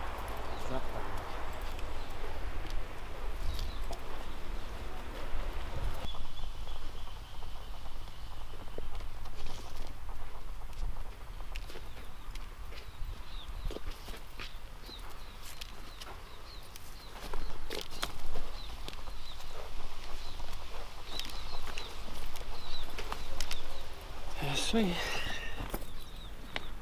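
Steady low rumble of wind on the microphone outdoors, with scattered light clicks and rustles.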